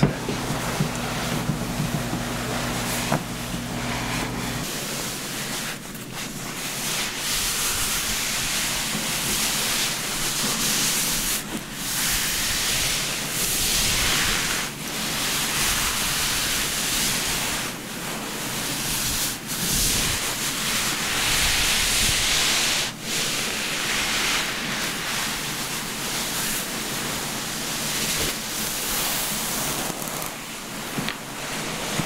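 Terry-cloth towel rubbing over wet hair: a rustling, hiss-like scrubbing that swells and eases with each pass of the hands. A steady low hum sits under it for the first few seconds, then stops.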